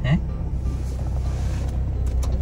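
Car engine running at idle, heard from inside the cabin as a steady low hum.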